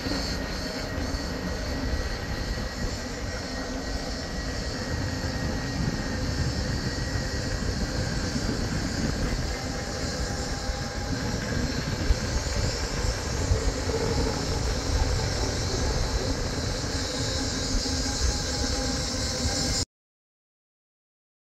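Steady wind and rolling road noise from moving along a paved street: a low rumble with hiss. It cuts off suddenly just before the end.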